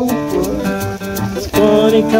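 Acoustic guitar strummed in a steady rhythm, with a man singing along. His voice drops back and then comes in strongly again about one and a half seconds in.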